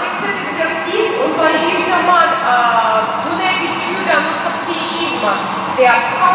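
Speech: a woman talking into a handheld microphone.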